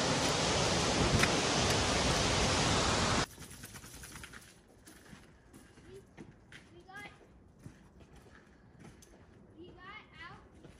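Steady rushing of a waterfall, which cuts off abruptly about three seconds in. A much quieter forest background follows, with faint distant voices.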